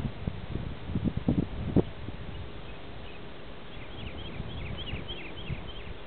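Low rumble and thumps on the microphone in the first two seconds, then a small bird singing a quick run of short, falling chirps about four seconds in.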